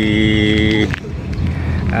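A man's drawn-out hesitation vowel, held on one steady pitch for about a second, then a steady low rumble.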